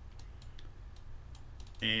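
A run of light computer-keyboard key presses, typing into a software search box, over a low steady hum.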